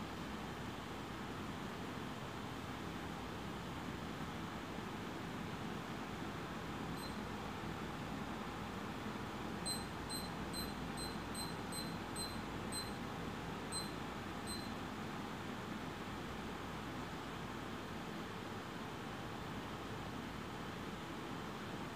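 Steady low room noise and hiss in a quiet room. About seven seconds in comes one short, high pip, then a run of about a dozen identical short pips, roughly three a second, from about ten to fifteen seconds in.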